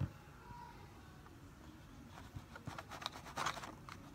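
A soft thump at the start, then from about halfway in a run of short scratchy rubbing strokes close to the microphone, from the camera being handled and makeup being worked near the eyeshadow palette.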